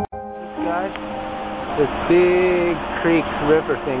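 Piano music cuts off abruptly just after the start. From then on a man talks outdoors over a steady background hiss.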